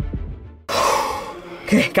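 Throbbing electronic music with a steady low beat fades out. About two-thirds of a second in, a sudden loud, breathy exhale like a heavy sigh starts and trails off.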